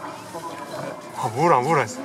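A person's voice: a loud, drawn-out vocal sound whose pitch wavers up and down, starting about a second in, over faint background voices.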